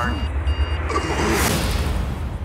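Trailer sound design: an electronic warning tone beeping about two and a half times a second, a heart-rate alarm, over a deep rumble. The beeping stops about a second in and a rising whoosh follows.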